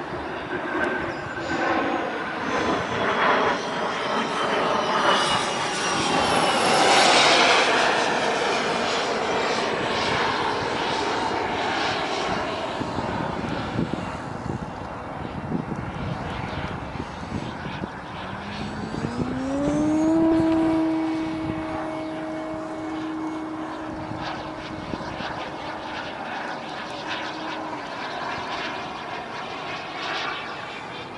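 Jet aircraft flying overhead, its engine noise swelling as it passes about seven seconds in and again around twenty seconds. A pitched hum rises about eighteen seconds in, then holds steady for several seconds.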